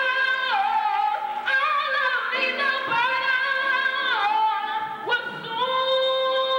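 A woman singing a gospel solo into a microphone, holding long notes that fall in pitch twice and swoop up into a held note near the end.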